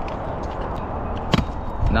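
Stunt scooter wheels rolling on skatepark concrete, with one sharp clack of a trick landing about a second and a half in.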